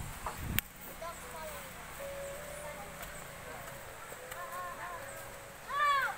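Faint distant voices talking, with a single sharp click about half a second in and a louder nearby voice at the very end.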